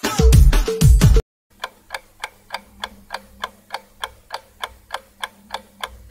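A Tamil film song's background music with heavy, falling bass beats cuts off about a second in. After a short silence, a countdown timer sound effect ticks evenly, about three ticks a second.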